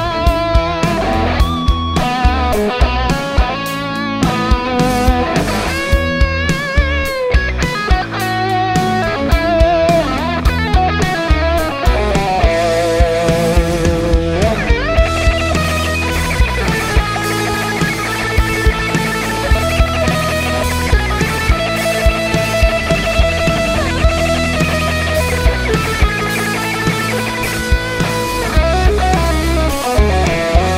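Electric guitar playing a rock lead through a Kemper profiling amp: a Marshall amp profile pushed by a Green Scream (Tube Screamer-style) overdrive with its drive at zero, used as a mid-range boost for a nasal, 80s-rock lead tone. Fast runs in the first half, then held notes with wide vibrato and bends, over a backing track with a steady drum beat.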